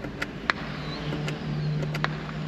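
A car engine hums steadily, getting louder about a second in. A few sharp clicks come as an overhead light switch on the windshield header is tried without result.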